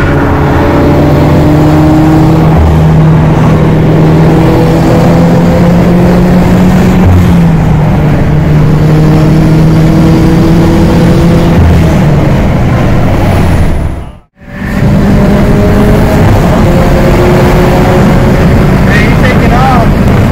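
In-cabin sound of a turbocharged Subaru BRZ's flat-four engine at highway speed, droning steadily over road and wind noise. Its pitch creeps slowly up and steps down a few times. The sound drops out completely for a moment about two thirds of the way through.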